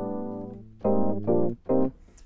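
OXE FM synth's 'Cool Keys' FM electric-piano preset. It plays a held chord with a long, drawn-out fade, then three shorter chords in quick succession in the second half.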